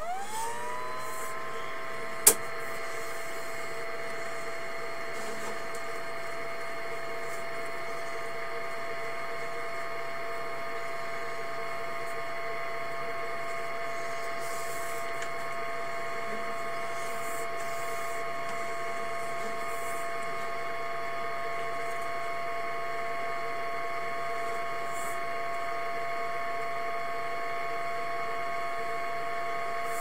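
An electric motor starting up, its whine rising in pitch within the first second and then running at a steady pitch. A single sharp click about two seconds in.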